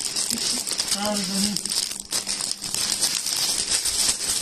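Clear plastic garment bags crinkling and rustling as packaged suits are handled, an irregular, continuous crackle.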